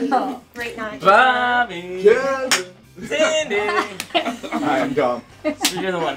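People's voices talking over one another in a greeting, with a sharp smack about two and a half seconds in and another near the end.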